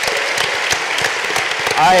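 Audience applauding steadily, many hands clapping at once.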